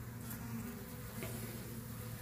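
Honeybees buzzing in a steady hum around an opened hive.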